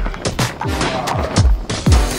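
Background music with a heavy beat: several deep bass drum hits that drop in pitch, over sharp snapping percussion.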